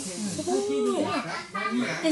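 Speech only: a voice talking at a conversational level, with no other sound standing out.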